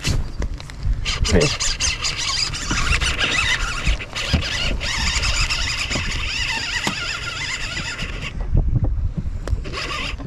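Baitcasting reel's drag slipping and buzzing as a hooked smallmouth bass runs and pulls line off the spool. It starts about a second in and cuts off suddenly a little after eight seconds.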